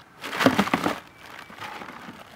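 Plastic bag of dry ice crinkling as hands rummage in it, a dense burst of rustling lasting just under a second, then fainter rustling.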